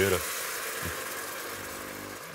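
Pot of browned shallots and beef trimmings sizzling steadily after red wine has been poured in to deglaze it, an even hiss of liquid boiling off against the hot pan.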